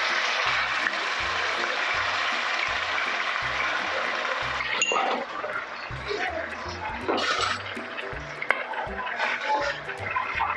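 Raw duck pieces sizzling as they go into hot oil in a karahi, loud at first and easing after about five seconds into scattered crackles, with clinks of a spatula against the pan. Background music with a steady beat plays underneath.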